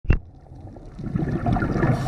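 Muffled underwater noise picked up through a waterproof camera housing while diving: a sharp knock at the very start, then a low rumbling that builds from about a second in.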